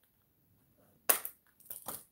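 Scissors cutting cloth: one sharp crunching snip about a second in, then a short run of snips and rustles near the end.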